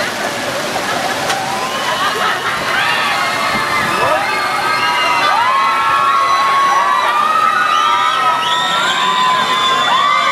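A crowd of thrill-ride riders screaming together as their gondola swings and flips, many long high-pitched screams overlapping and growing louder a few seconds in, over the steady splashing of water fountains.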